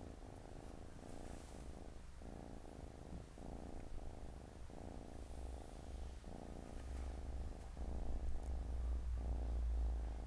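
Siamese cats purring close to the microphone as the kittens nurse from their mother, in steady phrases broken by brief pauses every second or so at each breath. A low rumble grows louder in the second half.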